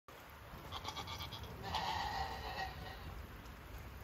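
A goat bleating faintly: one drawn-out bleat about two seconds in, with softer short sounds just before it.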